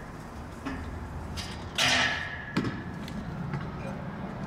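Freestyle scooter grinding on a metal handrail: a scraping burst with a faint ringing note about two seconds in, then a sharp knock.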